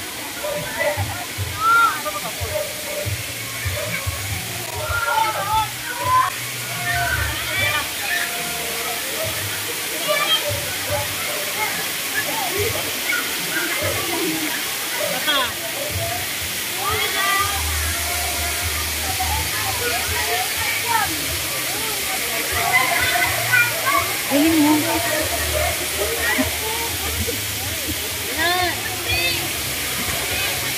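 Water pouring steadily over a rock wall into a spring-fed pool, with many people's voices chattering and calling around it.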